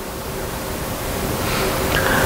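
Steady hiss of room noise with a faint low hum, growing steadily louder.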